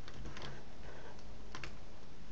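A few computer key presses clicking, several in quick succession around half a second in and another pair near the end, over a steady background hiss.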